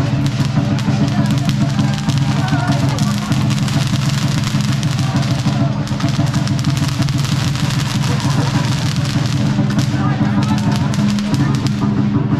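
Chinese dragon dance percussion: drums played fast and steady, with dense clattering hits above them, over the chatter of a crowd.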